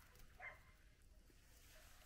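Near silence, with one faint short sound about half a second in.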